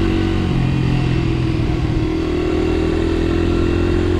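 Honda XR80R's small air-cooled single-cylinder four-stroke engine running steadily under way as the dirt bike is ridden over a gravel road.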